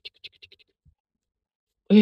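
Dry grass rustling and crackling in quick short bursts as it is handled and pressed into a nest, stopping after about half a second.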